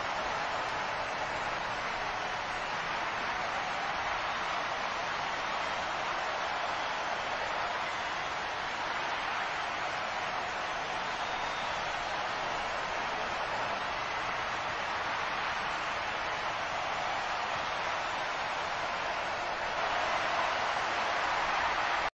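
Large stadium crowd cheering a goal: a steady, even roar that grows a little louder near the end.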